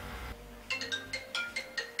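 Mobile phone ringtone: a marimba-like melody of short, quick notes in little groups, starting just under a second in.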